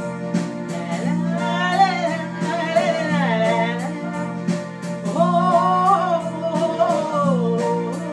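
A woman singing two phrases of held, wavering notes over electronic keyboard accompaniment with a steady beat.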